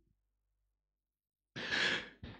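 Near silence for about a second and a half, then a man's breathy sigh near the end.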